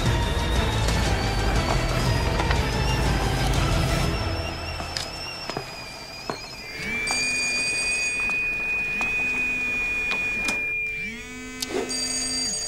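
Tense film score with a low drone for the first few seconds. Then a stovetop kettle whistles at the boil: a steady high whistle that starts about seven seconds in and breaks off in falling tones near the end as the kettle is taken off. A low buzz repeats about every second and a half underneath, a mobile phone vibrating with an incoming call.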